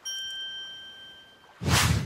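A bright, bell-like ding that rings out and fades over about a second and a half, followed near the end by a short rushing whoosh.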